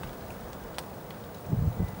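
Low steady background noise with a single faint click just before a second in and a brief low rumble near the end.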